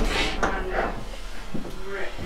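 A person's voice, a few short words spoken.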